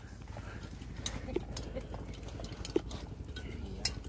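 Scattered light clicks and taps of chopsticks against bowls and plates, a few irregular strikes over faint steady background noise.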